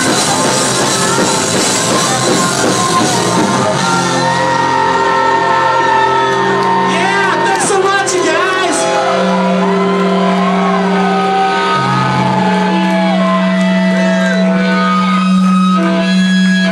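Live rock band playing loud: drums and distorted electric guitar together for the first few seconds, then the drums drop out and held guitar notes ring on under shouted vocals.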